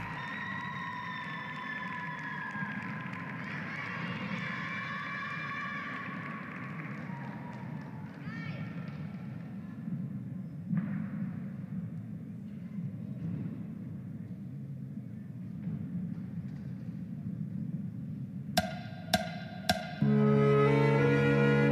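Sports-hall ambience: a low murmur of the hall, with background music fading out over the first several seconds. Near the end come three sharp knocks about half a second apart.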